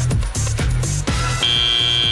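Arena music with a steady beat, then about 1.4 s in the steady, high-pitched end-of-match buzzer starts and holds, signalling that the match is over.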